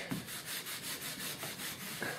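Wire wool rubbed back and forth along the moulded edge of an old wooden frame in quick, even strokes, several a second, taking the edges off the wood before it is waxed.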